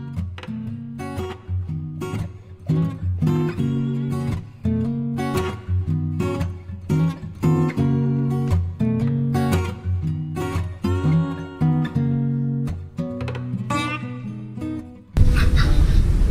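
Background music: acoustic guitar playing plucked notes and chords. It gives way to room sound near the end.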